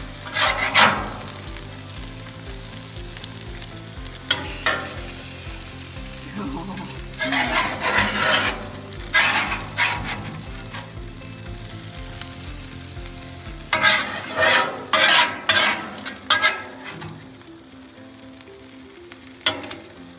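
Ribeye, onions and peppers sizzling on a Blackstone flat-top griddle, with a metal spatula scraping across the griddle top in several short bursts.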